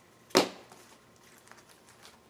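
A single short, sharp slap of paper and plastic as comic books are handled and set down, about a third of a second in, followed by faint handling noise.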